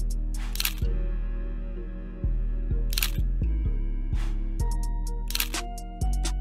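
Background music with a deep, sustained bass line and a sharp drum hit about every two and a half seconds.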